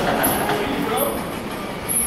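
Short, very high-pitched squeaks, typical of boxing shoes on the ring canvas, over a noisy gym hubbub with faint voices in the background.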